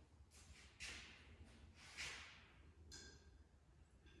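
Faint sounds of rope being hauled through a pulley to raise shop lights: a few soft swishes that fade out, about a second apart, then a short thin squeak about three seconds in, over a low steady hum.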